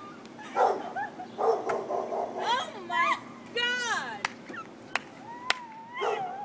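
A woman's high-pitched shrieks and crying-out in shock and excitement, in short bursts that swoop up and down, mixed with laughter. Two sharp clicks come in the second half.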